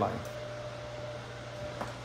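Steady low hum of room tone with a faint thin tone above it, and one faint click near the end.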